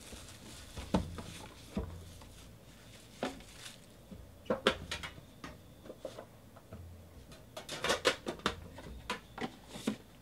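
Hands handling a cardboard trading-card box and its plastic wrapping: scattered light knocks, taps and rustles, with a busier run of clicks and knocks about eight seconds in.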